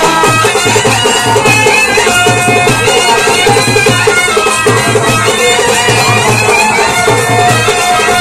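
Live folk band playing a kolatam song: a saxophone carries a winding melody over a steady, repeating drum beat.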